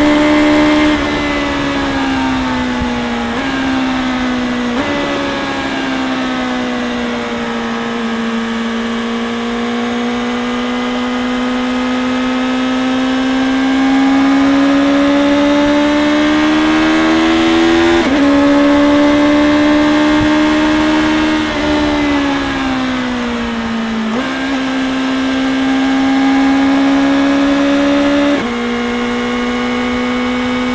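BMW S1000R inline-four engine through an Akrapovic exhaust, heard from the rider's seat while riding at part throttle. The engine pitch climbs slowly under acceleration and sinks while slowing, with several sudden steps in pitch as gears change.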